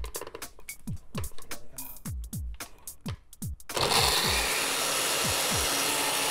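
Countertop blender switched on about two-thirds of the way in and running steadily, grinding a jar of Oreo cookies into crumbs, over background music with a steady electronic beat.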